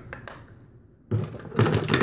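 Handling noise of makeup products being grabbed and rummaged through close to the microphone: a loud burst of knocking and scraping starting about a second in.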